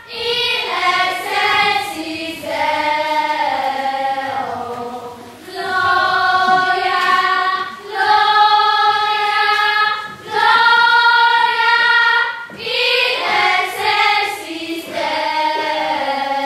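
A group of children's voices singing together in long held phrases, with short breaks about five and ten seconds in.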